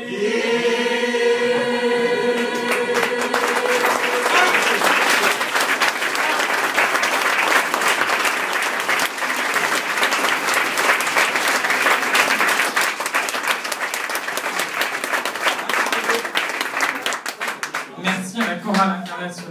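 A choir holds its closing chord for the first few seconds, then audience applause takes over and runs on loudly.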